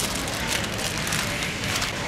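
Steady, even background noise of a supermarket aisle, with no single event standing out.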